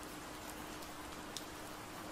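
Faint steady hiss with a thin, steady low hum beneath it.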